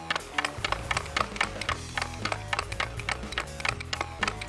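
Background music, with a quick, uneven clacking of a hockey stick blade tapping a puck from side to side on a bare concrete floor.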